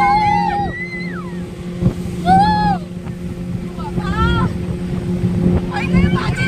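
Speedboat engine running with a steady hum under wind and water noise, as passengers shriek and laugh: a long high cry at the start, then short high cries about two and four seconds in.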